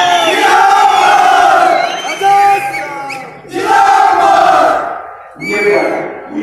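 Crowd shouting slogans together, many voices overlapping, in loud repeated surges with short dips between them.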